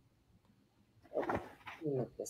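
Near silence, then about a second in, short pitched vocal sounds that bend up and down in pitch.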